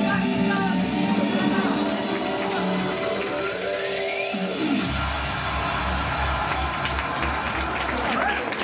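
Music with held notes and a rising sweep, then a heavy bass beat comes in about five seconds in.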